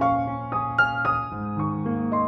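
Calm piano music: a melody of single notes, a few a second, over held low notes, with the bass note changing about halfway through.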